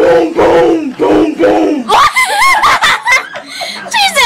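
Several young people shouting and laughing loudly together, with high, wavering yells in the second half.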